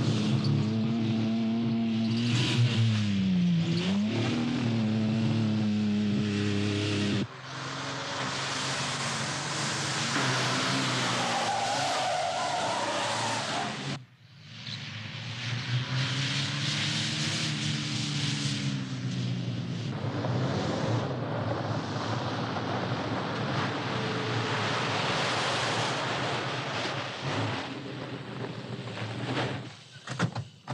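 Valiant Charger engine running hard and revving, its note dropping and climbing in the first few seconds and again later, over tyres skidding and scrabbling on sand and dirt, with a tyre squeal around the middle. The sound breaks off abruptly twice as the shots change.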